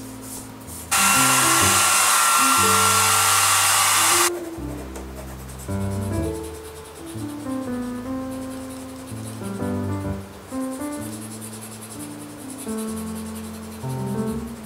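An aerosol spray can hissing in one continuous burst of about three seconds, starting and stopping abruptly, putting a layer on the back of a glass negative, over background music of plucked notes.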